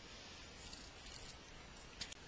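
Near silence: faint, steady room tone and microphone hiss.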